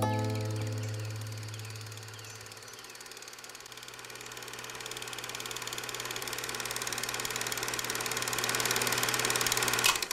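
The last guitar chord of a song rings out and fades over the first few seconds. Under it, a fast, even mechanical clatter grows steadily louder and stops abruptly at the very end.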